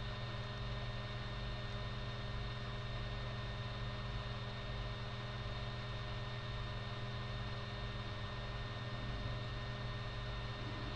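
Steady low hum and hiss of background room tone picked up by the microphone, unchanging throughout.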